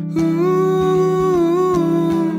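A man singing one long wordless "ooh", the note wavering slightly, over a sustained electric guitar chord.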